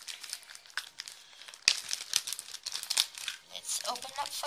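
Clear plastic zip bags of beads crinkling and rustling as they are handled, in irregular crackles with one sharp crackle about one and a half seconds in.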